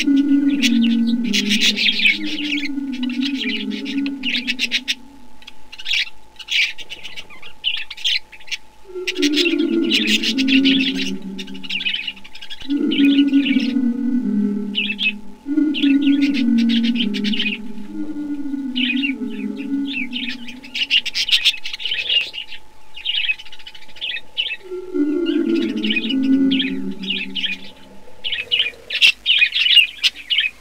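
Budgerigars chirping and chattering in the aviary, with a lower call repeated in phrases of a few seconds and a faint steady tone that stops near the end.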